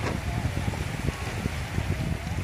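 Wind buffeting the microphone in an uneven low rumble, over small waves washing in on a shallow sandy beach.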